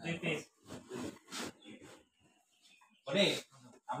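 Speech: a voice talking in short phrases, with a brief quiet gap just past the middle.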